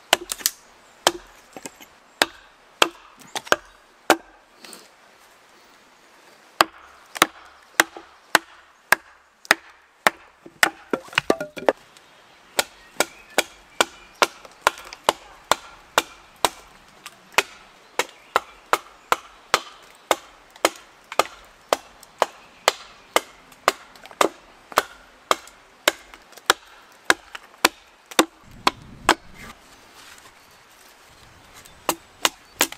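A wooden mallet strikes again and again on the back of an axe driven into a board, splitting the wood. The knocks are sharp, at first about one a second with pauses, then steadier at about two a second, with a brief creak of the wood about eleven seconds in.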